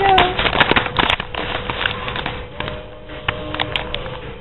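Close crackling and clicking handling noises, densest in the first second or so and then thinning out, with a brief voice fragment at the very start.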